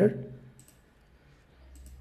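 Computer mouse clicking faintly, once about two-thirds of a second in and again near the end, after a man's voice trails off at the start.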